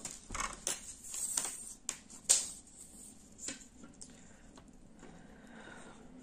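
Hands handling a flexible tape measure and laying it across a chunky plush-yarn knitted hat: scattered light clicks and rustles, the sharpest about two seconds in, growing quieter after the first few seconds.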